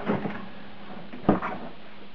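Kärcher K5 Compact pressure washer's plastic body being tipped over and laid on its side on the floor: a brief rustle of handling, then one sharp knock a little over a second in as it comes to rest.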